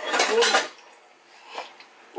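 Steel kitchen utensils clinking together a few times in the first moments, then only a quiet room with one faint knock.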